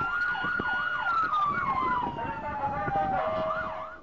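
Two emergency-vehicle sirens sounding together. One runs a fast yelp of about three rises and falls a second; the other holds a steady tone, then slowly falls in pitch.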